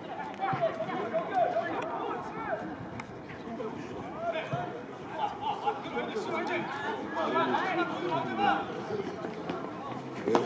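Several voices calling and shouting across a football pitch during play, overlapping and rising and falling throughout.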